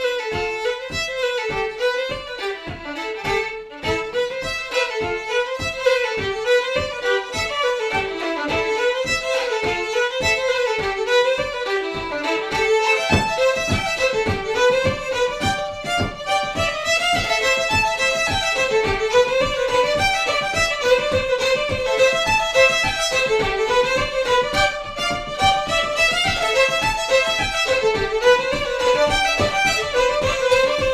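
Two fiddles play a lively Québécois reel together over a steady low beat. Piano accompaniment comes in about a third of the way through and fills out the bass.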